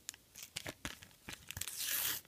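A Panini sticker packet being torn open by hand: a run of short paper crackles and rips, building into a longer tear near the end.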